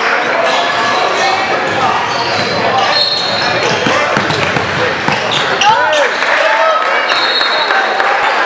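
A basketball dribbled repeatedly on a hardwood gym floor, with crowd chatter throughout.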